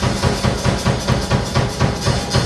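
Pearl drum kit played live in a fast rock beat: the bass drum about four times a second under a steady wash of cymbals, with snare hits.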